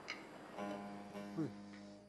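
Bağlama strings plucked softly about half a second in and left ringing as a steady held chord, with a man's brief spoken 'evet' over it.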